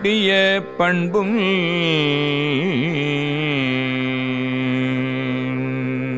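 A man singing a Tamil devotional hymn verse in Carnatic style, with quick ornamented turns of pitch, then settling into one long held note.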